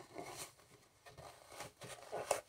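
Faint scuffs and rustles of a piece of floral foam being pressed by hand down into a plastic watering can, with a few short scrapes, one about half a second in and a couple near the end.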